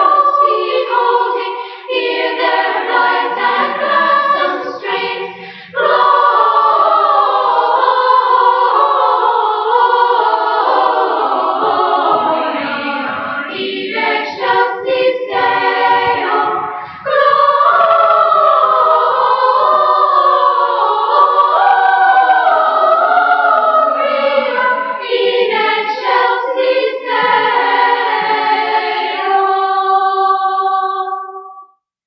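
Children's choir singing in parts, played from a live cassette-tape recording. The singing breaks off briefly about six and seventeen seconds in, then ends on a held chord.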